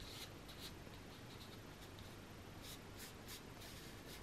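Fingertips rubbing dried masking fluid off watercolour paper to uncover the white lines beneath: a faint series of short, scratchy rubs at irregular intervals.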